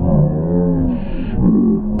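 A loud, muffled, drawn-out voice with its pitch sliding up and down and no clear words.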